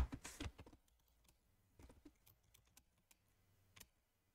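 Faint, scattered clicks of computer keyboard keys, a few separate taps spread over a few seconds.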